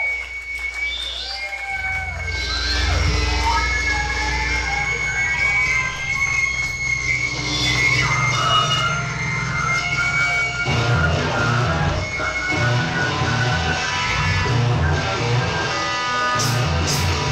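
Live rock band of electric guitars and drums playing. Sliding guitar notes open the passage, the low end and drums come in about two seconds in, and from about ten seconds a steady driving rhythm takes over in the bass and drums.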